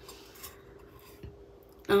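Faint handling sounds of a round diamond-painting coaster being slid and picked up off a tabletop, with a soft tap just past a second in. A woman's voice starts right at the end.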